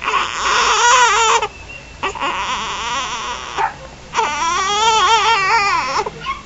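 A four-week-old baby boy crying in three long wails, each broken off by a short breath, the middle one rougher and hoarser than the others.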